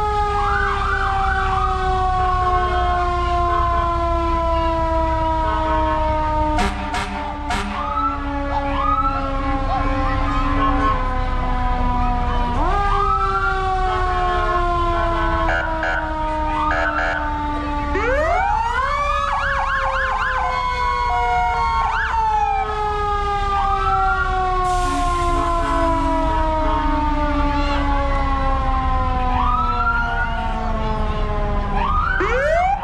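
Several emergency-vehicle sirens sounding together, each tone falling slowly in pitch and then jumping back up, with stretches of fast warbling. A few sharp clicks come about seven seconds in, over a steady low rumble.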